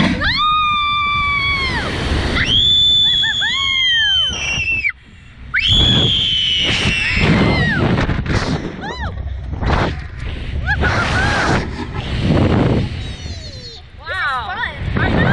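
Two riders on a slingshot reverse-bungee ride screaming as they are launched and flipped: three long high screams of about two seconds each in the first seven seconds, then shorter cries. Wind rushes on the onboard microphone throughout.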